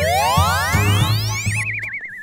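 Cartoon sound effects over children's background music: a long, smooth, rising slide-whistle glide, then a warbling whistle tone near the end.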